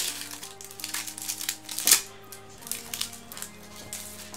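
Trading-card pack wrapper being torn open and crinkled by hand, a few short crackles with the loudest about two seconds in; the wrapper is thin and gives way easily, like paper. Quiet background music plays underneath.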